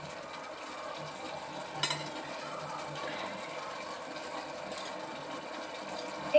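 Metal kitchenware clinking sharply once about two seconds in, and lightly again near five seconds, over a steady mechanical hum.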